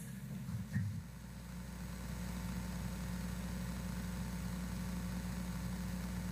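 A steady low hum in a pause with no speech, with a small bump a little before a second in.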